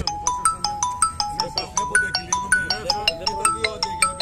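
Mobile phone ringtone playing: a quick melody of clear, pitched notes, about five a second.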